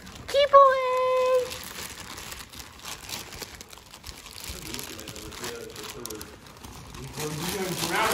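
Thin clear plastic bag crinkling and rustling as a backpack is pulled out of it and handled.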